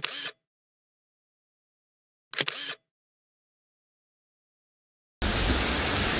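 Dead silence for most of the stretch, broken by two short fragments of sound, one at the start and one about two and a half seconds in. Near the end the steady rushing hiss of a waterfall cuts back in abruptly.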